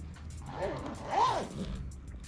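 A zipper on a soft cue case being pulled, heard over background music.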